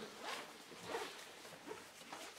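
A quiet pause with three faint, short rustling swishes, the first about a third of a second in, one near the middle and one near the end.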